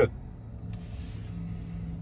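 Low steady hum inside a parked Tesla Model Y's cabin, with a brief soft rustle about a second in.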